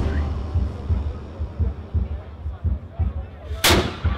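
A starting cannon fires a single loud blast near the end, the signal that starts the marathon. Before it there is a low, muffled rumble.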